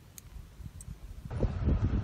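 Faint wind on the microphone with a few light clicks. A little over a second in, this gives way to a low rumble with soft thumps from inside a vehicle cab.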